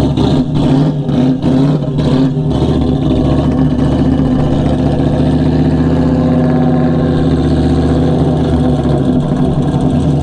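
LS V8 engine in a Honda Accord hatchback running as the car drives slowly, with a deep, steady exhaust note that is uneven for the first two or three seconds before settling.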